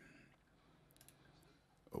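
Near silence: room tone with a few faint computer mouse clicks about a second in.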